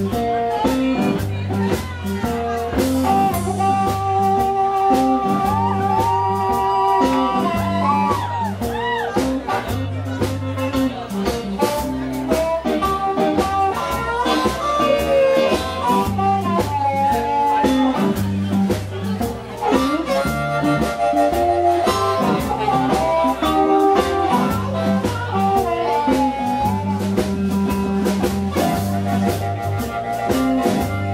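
Live blues band playing: Fender Telecaster electric guitar and harmonica trading bent, sliding notes over electric bass and drum kit.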